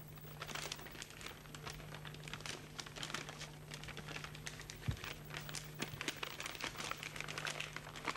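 Paper crinkling and rustling in irregular little crackles as a sheet of origami paper is folded and creased by hand. A steady low hum runs underneath, and a soft thump comes about five seconds in.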